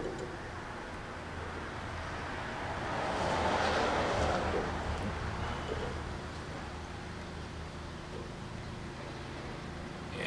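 Steady low workshop background hum, with a broad rush of noise that swells and fades about three to five seconds in.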